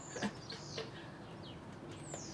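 House sparrows chirping: a few short, high chirps that slide downward in pitch, clustered in the first second, with one small tap among them.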